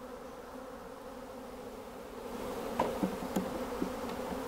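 A cloud of honeybees buzzing in a steady hum around an open hive box, just shaken out of their package, the hum swelling a little about two seconds in. A couple of light wooden knocks come near the end as frames are set into the box.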